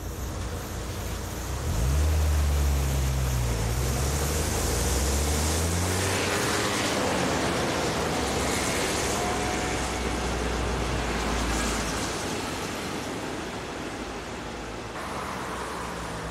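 An electric train passing close by. A low hum rises in pitch over the first few seconds, then the wheels and coaches rumble past and the noise eases off after about twelve seconds.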